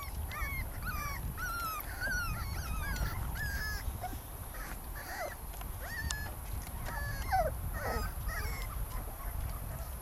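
Puppies whimpering in short, high-pitched whines, a couple each second, as they try and fail to climb out of a plastic wading pool.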